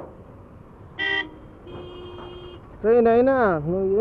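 Vehicle horns honking in road traffic: a short, loud toot about a second in, then a longer, quieter steady horn tone, over the low rumble of traffic. A man's voice comes in near the end.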